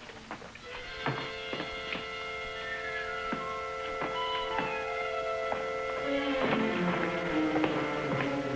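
Background score music: held chords with a short melody moving over them, shifting to new notes about six seconds in.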